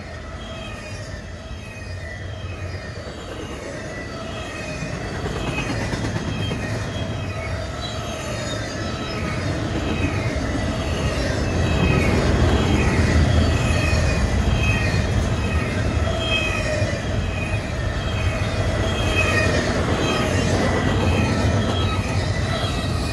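CSX double-stack intermodal train's well cars rolling past, a steady rumble of steel wheels on rail with faint, recurring high wheel squeals. It grows louder over the first dozen seconds, then holds steady.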